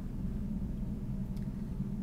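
Steady low background hum of a lab room, with one faint click about one and a half seconds in.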